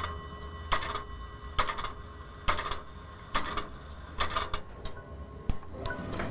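Brass clockwork of a large mechanical clock ticking, one sharp tick a little under every second, each with a short metallic ring after it. A faint steady ringing tone lingers underneath.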